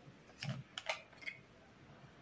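A few small, sharp clicks as the screw cap is twisted off a plastic bath foam bottle shaped like a Christmas bauble.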